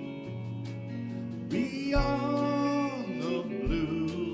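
A band playing a slow country ballad: acoustic guitar accompaniment under sustained lead notes that slide up and down in pitch.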